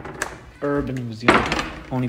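A refrigerator door being pulled open: a short rush of noise about a second and a half in, the loudest thing heard, among snatches of speech.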